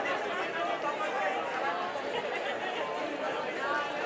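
Crowd chatter: many people talking at once in a steady, unbroken hubbub.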